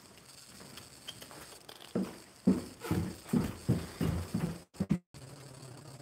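A run of about eight dull, low thumps, a few to a second, starting about two seconds in, like heavy steps or knocks near the phone's microphone. The sound drops out completely for a moment just after them.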